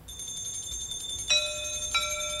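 Opening of a devotional bhajan on keyboard: sustained bell-like tones, with a lower note entering a little past halfway.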